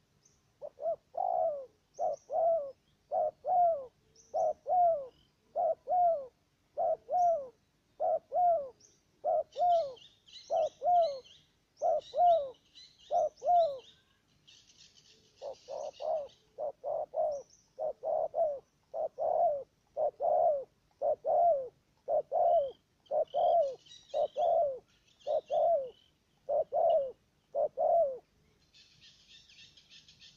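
Spotted dove cooing: a long, rapid series of short, falling coos at a little more than one a second, with a break of about two seconds near the middle. Fainter high chirping from small birds comes in patches in the middle and near the end.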